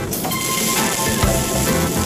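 Diced onion, garlic, green chili and red bell pepper sizzling steadily as they sauté in a nonstick frying pan, with background music underneath.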